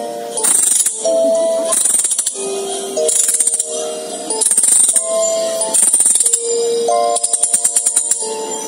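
Background music with held, changing chords and a shaken jingle that sounds roughly once a second.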